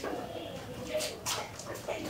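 Quiet, stifled giggling and breathy whispers from a few people trying not to wake someone.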